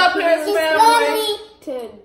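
Children and a woman singing together in drawn-out, gliding notes, with a brief break near the end.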